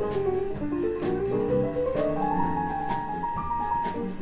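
Live jazz band playing: a keyboard line climbing step by step over electric bass and a drum kit, with steady cymbal strokes about four a second.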